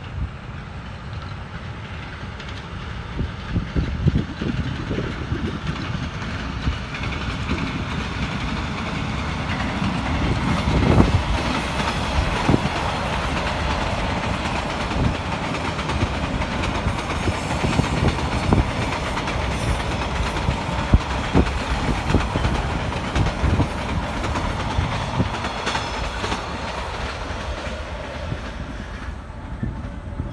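A passenger train hauled by a D20E diesel locomotive passing close by, its wheels clattering over the rail joints in an uneven run of knocks. The sound builds about four seconds in and eases off just before the end.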